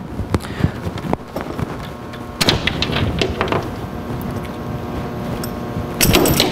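Plugs and cords being handled on a metal test bench: scattered clicks and knocks, with a steady hum coming in about two and a half seconds in.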